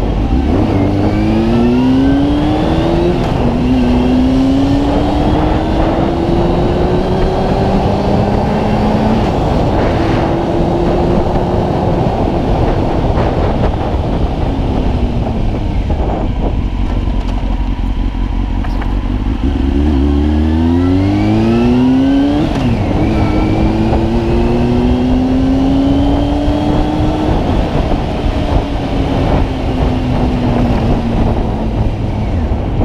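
Honda Hornet CB600F inline-four engine heard from the rider's seat, pulling up through the gears with its pitch rising and dropping back at each upshift. It eases off and slows in the middle, then accelerates again about twenty seconds in through several quick upshifts before settling into a steady cruise.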